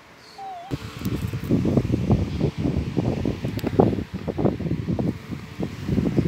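Fabric rustling and rubbing right on the phone's microphone as it moves against a blanket, loud and irregular, starting about a second in. A short faint squeak comes just before it.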